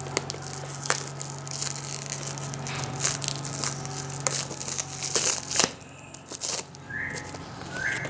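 A knife cutting and tearing into a tape-wrapped parcel: irregular scraping and crinkling of the packing tape and wrapping, with sharp clicks and a couple of short squeaks near the end.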